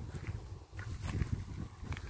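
Quiet footsteps on a soft dirt garden path, with an irregular low rumble.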